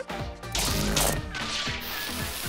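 Cartoon sound effect of a home-made party machine malfunctioning: a crashing burst of noise starting about half a second in, over upbeat background music.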